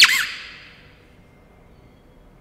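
A short high squeak rising steeply in pitch, ringing away in a reverberant church over about a second, then faint room tone.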